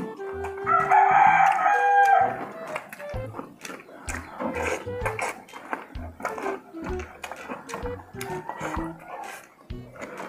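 A loud, drawn-out pitched call about a second in, lasting over a second. It plays over background music with a recurring low beat, with small eating noises from hands and mouths working roast pork.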